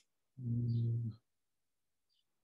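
A man's short hummed "mmm" filler sound, held on one low, steady pitch for just under a second, starting about half a second in.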